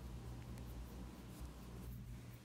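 Faint scratchy rustle of a hand rubbing a small dog's wiry fur at its neck and chin, over a low steady hum.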